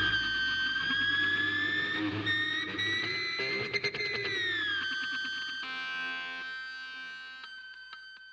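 The last note of an instrumental power metal track: after the band's final hit, a single distorted lead guitar note rings on alone, bends up slightly, slides down about five seconds in, and then fades out toward the end.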